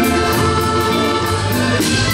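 Two chromatic button accordions playing a waltz live, with drum kit accompaniment ticking steadily on the cymbals.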